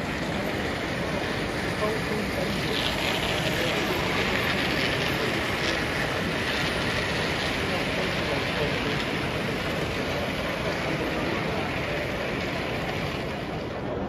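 A model steam locomotive and its rake of coaches running along the layout track, set against the steady hubbub of a crowded exhibition hall.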